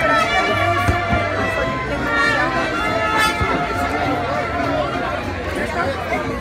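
Crowd chatter, several people talking at once, over background music with a bass line.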